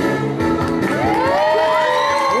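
Rock-and-roll dance music ending. From about a second in, an audience cheers and whoops, with many high voices gliding up and down.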